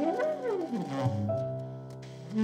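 Live jazz from saxophone, piano and double bass. In the first second one line slides up in pitch and back down again, over held piano and bass notes, and a low bass note then sounds on.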